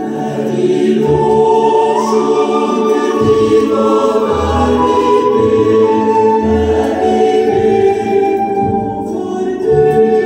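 Choir recording of a Swedish chorale arrangement played back through a horn loudspeaker system, slow sustained chords in several voices over a low bass line, heard in the room.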